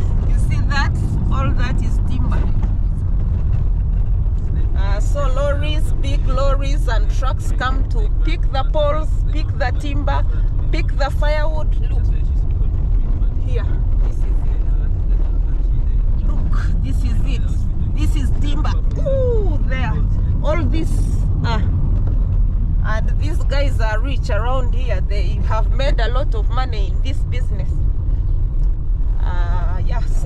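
Inside a moving car: a steady low rumble of engine and tyre noise while driving on an unpaved road, with people's voices talking at several points.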